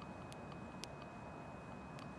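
Faint outdoor background noise at night, with a thin steady high whine and a few soft clicks.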